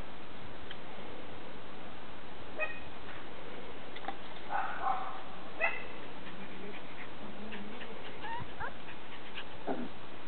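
Shetland sheepdog puppies giving a few short, high yips and whines, scattered through, some gliding in pitch near the end, over a steady background hiss.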